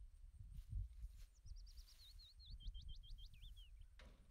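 A songbird sings one phrase starting over a second in: a quick run of high notes, then a string of slurred notes that step down in pitch to a lower ending. Underneath is a faint, uneven low rumble.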